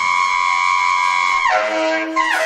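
Free-jazz saxophone holding a high, slightly wavering note, then swooping sharply down to a low note about one and a half seconds in, with a drum kit played behind it.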